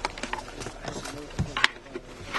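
Faint, muffled men's conversation heard from inside a car, with a few sharp clicks and knocks, the loudest about a second and a half in.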